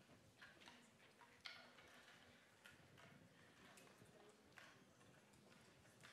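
Near silence: room tone with scattered faint clicks and small knocks, the sharpest about one and a half seconds in.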